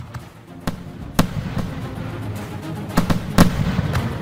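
Aerial fireworks bursting: a dense crackle with several sharp bangs, the loudest near the end.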